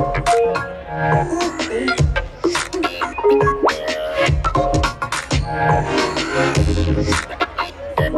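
Live glitch hop through a festival sound system: heavy bass hits under chopped, stuttering synth fragments, with a quick rising sweep a little before the middle.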